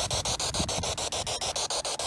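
Spirit box sweeping through radio stations: static hiss chopped up about ten times a second.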